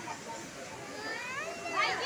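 Background chatter of people talking, with a child's high voice rising near the end.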